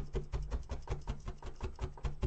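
Needle felting tool's barbed needles being stabbed rapidly into wool tops on a felting mat: an even run of crunchy stabs, several a second.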